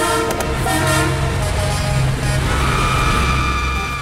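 Vehicle horn blaring over a low engine rumble, ending in a long steady honk: a sound effect for an oncoming car crash.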